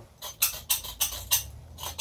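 Flint striker on an oxyacetylene cutting torch, squeezed over and over: a quick run of short, sharp metallic scraping clicks, several a second, as the torch is being lit.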